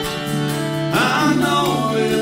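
Acoustic guitars and a fiddle playing a country song live, in an instrumental gap between sung lines, with a sliding melody line coming in about a second in.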